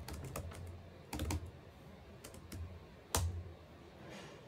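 Computer keyboard typing: scattered small clusters of keystrokes, with one louder key press about three seconds in.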